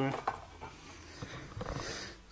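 The end of a spoken word, then faint handling sounds: light rubbing and a few small clicks as the camera and the clamped steel patch panel are moved about.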